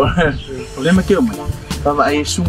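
Men speaking in Samoan, with background music underneath.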